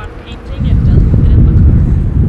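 Wind buffeting the microphone, a loud low rumble that swells up about half a second in.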